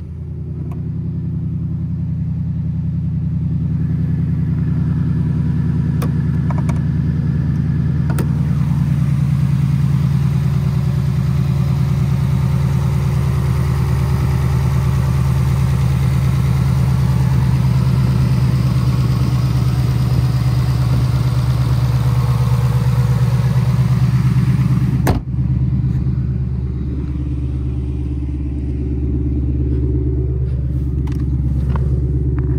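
2019 Mustang GT's 5.0-litre V8, fitted with an aftermarket exhaust, idling steadily soon after a cold start, with no ticks or odd noises. The idle grows louder over the first few seconds, and there is one sharp click about five seconds before the end, after which it is a little quieter.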